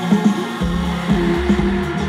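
Electronic dance music from a live band with synthesizers and drums; a deep bass line and a steady drum beat come in about half a second in.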